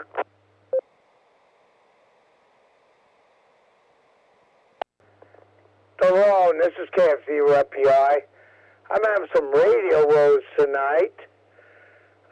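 A two-metre FM repeater transmission heard on a ham receiver: open-carrier hiss with the low hum of the repeater's 100 Hz PL tone. It drops after a short beep, then comes back with a click about five seconds in. A man's voice comes through the radio for about five seconds, too unclear for the words to be made out.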